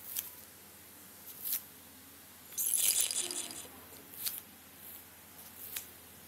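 A brief jingling rattle lasting about a second, near the middle, among a few short sharp ticks or swishes.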